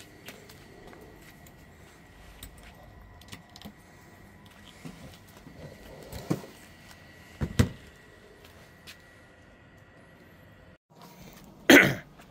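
Small metal clicks and handling noises from a rotisserie spit's fork clamp and tie wire as a whole lamb is fastened onto the spit, with a few sharper clicks about six and seven and a half seconds in. A short loud burst near the end.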